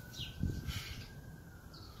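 Quiet outdoor ambience with a short, falling bird chirp near the start and a faint steady high tone throughout. A brief low rumble comes about half a second in.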